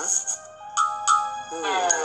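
Cartoon sound effects from a children's animated story app: bright chiming tones and sliding, bending notes in a few short bursts, with a pair of short chimes about a second in.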